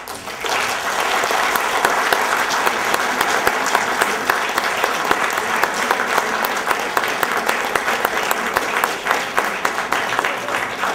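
Audience applauding, starting suddenly and holding steady.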